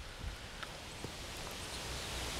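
Steady outdoor wind noise: a soft hiss with a low rumble, and a few faint ticks.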